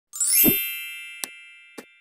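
Channel-intro logo sound effect: a bright ringing chime with a quick rising sweep and a low thud about half a second in, ringing out slowly, followed by two short clicks.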